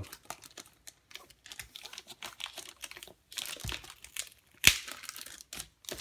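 Clear plastic shrink wrap on a small product box being picked at and peeled off by hand: scattered crinkling and crackling, busier a little past the middle, with one sharp click about two-thirds of the way through.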